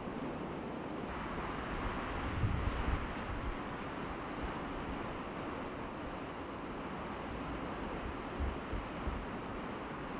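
Wind blowing over open water, a steady rush with gusts buffeting the microphone about two and a half seconds in and again near the end.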